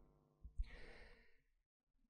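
A short, faint sigh from the lecturer into the handheld microphone about half a second in, then near silence: room tone.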